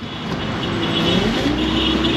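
Car engine running and road noise heard from inside a moving taxi's cabin, growing a little louder over the first second.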